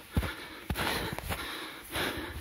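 A runner breathing hard through a strenuous stretch in deep snow, one long breath through the middle, with a couple of soft low thumps near the start.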